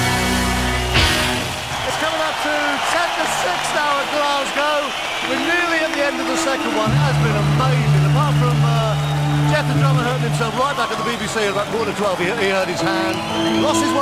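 A live rock band playing loudly, stopping about a second in on a drum and cymbal hit. Voices follow over background music of long held chords that change a few times.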